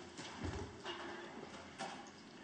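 Scattered light knocks and clatter of people moving about a meeting room, with a low thump about half a second in and faint voices in the background.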